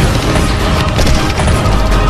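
Battle sound effects: dense, rapid crackling of gunfire and splintering debris, with a deep rumble rising near the end, over a music soundtrack.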